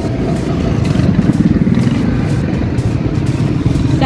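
Loud, steady low rumble of street traffic, with motorcycle engines running close by.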